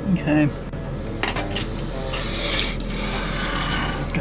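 Light metallic clicks and taps of tweezers and small metal tools against model railroad track as a guard rail is set in place, a few sharper clicks scattered through the middle.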